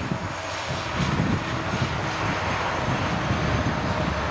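Distant engine noise of a passing vehicle: an even rushing sound that swells through the middle and eases off near the end.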